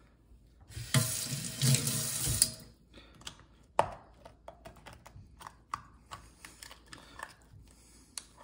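An oyster knife scraping and grinding against an oyster's shell for a couple of seconds, then a run of sharp clicks and small crunches as the pointed blade works into the shell. The blade's point is too sharp for this oyster and chips off the edge of the shell.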